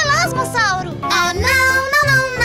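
Children's song: a child's voice singing, its pitch sliding up and down, over bright backing music with a steady bass.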